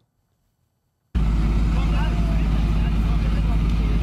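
Near silence for about a second, then the steady low rumble of a MAN truck's diesel engine idling starts suddenly, with faint voices over it.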